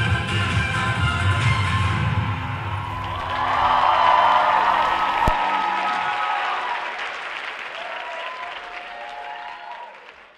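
Dance-track music with a beat ends on a single hit about five seconds in, while an audience breaks into applause and cheering. The applause fades away near the end.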